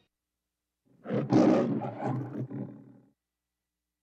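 A loud, rough roar of about two seconds in several surges, starting about a second in after silence.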